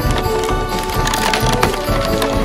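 Wooden dog sled rattling and knocking in quick irregular clatters as it runs over the snow trail behind the dogs, with music playing underneath.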